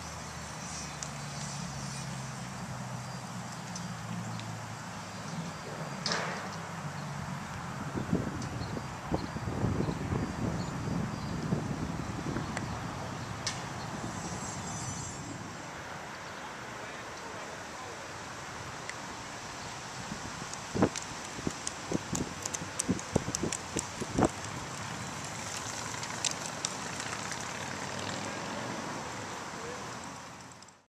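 Outdoor roadside ambience: a steady background rush with a low vehicle engine hum early on, a swell of noise from a vehicle passing about eight to twelve seconds in, and a run of sharp clicks past twenty seconds.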